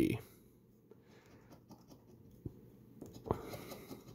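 A coin scraping the coating off a scratch-off lottery ticket: a few faint ticks, then a rougher run of scraping strokes near the end.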